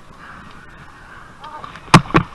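Faint rustling, then near the end two heavy thuds about a quarter second apart as the wearer drops into the river and the body-worn camera hits the water.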